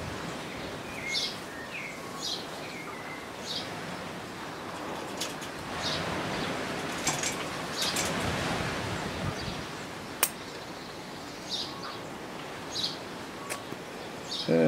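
Small birds chirping, a short high chirp about every second, over a steady outdoor hiss that grows louder for a few seconds in the middle. A single sharp click comes about ten seconds in.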